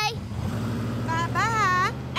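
Cartoon mail truck engine humming steadily as the truck drives off, with a brief rush of noise in the first second. A short high-pitched cartoon voice calls out around the middle.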